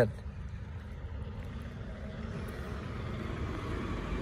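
Low, steady rumble of a heavy truck's engine, slowly growing louder as the truck approaches.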